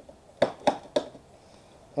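Three sharp clicks about a quarter second apart as a screw is worked by hand into a blind fastener (anchor nut) in the nosebowl's metal strip.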